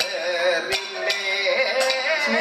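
Kathakali accompaniment music: a singer's wavering, ornamented melodic line with sharp percussion strikes keeping time at an even pace.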